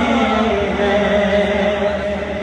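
A man's solo voice reciting a devotional chant into a microphone, holding one long, steady note.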